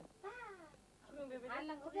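Women's voices talking in a high pitch with strongly gliding intonation: one falling call near the start, more talk in the second half.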